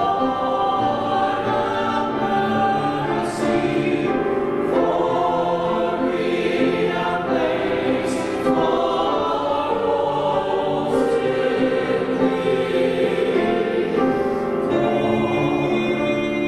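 Mixed-voice church choir singing in parts, holding long notes that change every second or two.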